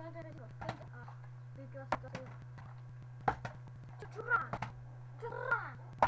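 Small plastic water bottle tossed in bottle-flip attempts, knocking onto a wooden tabletop twice, about a second and a half apart. A voice makes short sounds after the knocks, over a steady low hum.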